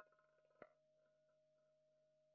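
Near silence, with one faint click a little after half a second in.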